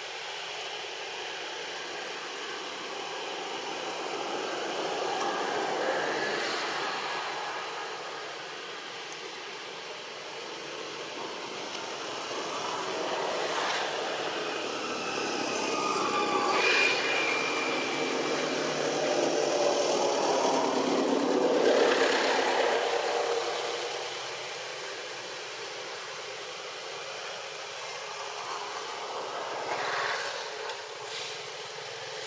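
Motor vehicles passing by, the noise swelling and fading: once around six seconds in, then louder and longer from about twelve to twenty-three seconds, with a falling whine partway through.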